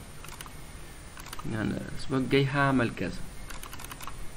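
Scattered clicks of a computer keyboard and mouse, in small clusters, as a text box on screen is edited.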